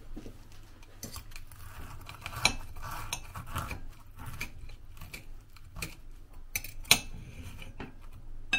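Steel knife and fork clinking and scraping against a ceramic plate while cutting through a crumb-coated fritter. There are irregular clicks throughout, with the two sharpest clinks about two and a half seconds in and near seven seconds.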